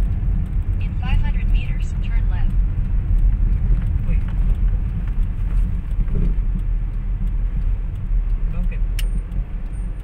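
Steady low rumble of a car's engine and tyres heard inside the cabin as it drives slowly. A brief voice is heard about a second in, and there is a single sharp click near the end.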